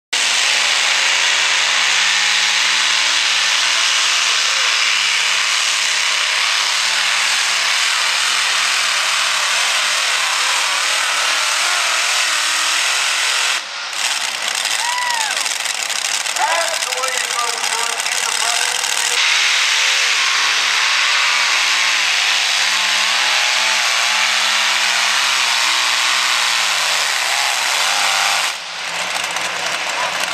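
Multi-engine modified pulling tractors running flat out under load, a loud, dense engine roar whose low pitch wavers as the engines labour. The roar drops out abruptly twice, about 14 seconds in and near the end, where one tractor's run gives way to the next.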